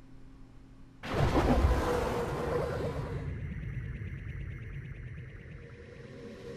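Outro logo sting: a sudden, loud sound-effect hit about a second in that fades and gives way to a steady, lightly pulsing synth music bed.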